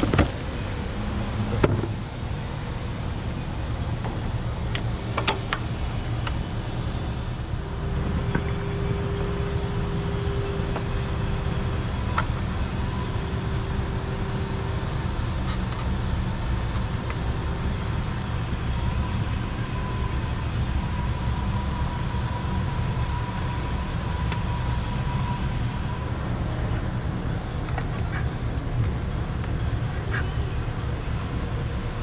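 A steady low background rumble, with sharp clicks and rustles of cardboard and plastic as a new fuel filter cartridge is taken out of its box in the first couple of seconds.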